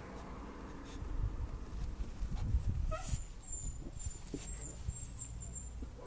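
An injured puppy, its hind legs paralysed by a suspected spinal injury, gives a short high cry about halfway through. A low rumbling noise runs underneath.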